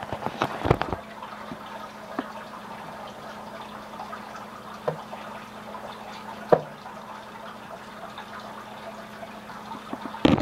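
Handling noises in a reptile tank: a cluster of knocks in the first second, then a few single clicks, the sharpest about six and a half seconds in, over a steady low hum.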